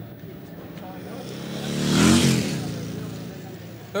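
A motor vehicle passing by: its engine noise swells to a peak about two seconds in, its note rising and then falling in pitch, and then fades away.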